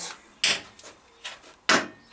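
Two sharp knocks about a second and a quarter apart, the second the louder, with a few light ticks between: small objects being handled and set down on a workbench.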